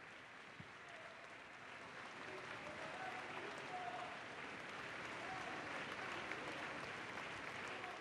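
Audience applauding, faint and steady, swelling slightly over the first few seconds.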